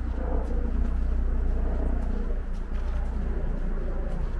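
A steady low rumble of outdoor background noise, with faint footsteps on a dirt path.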